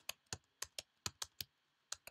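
Keystrokes on a computer keyboard: about seven quick, uneven taps in a second and a half, a short pause, then one more near the end, as text is deleted and retyped.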